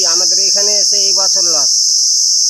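A loud, steady, high-pitched insect chorus runs throughout. A man's voice speaks over it and stops shortly before the end.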